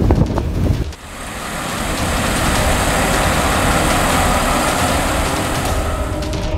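Combine harvester running steadily while cutting maize, its engine and machinery fading in about a second in and holding a constant level.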